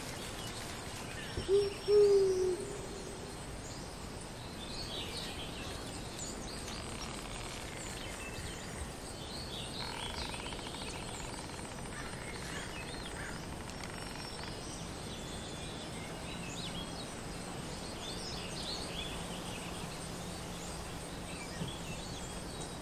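Forest ambience: an owl hoots twice about two seconds in, the loudest sound, over a steady hush with scattered faint chirps of small birds.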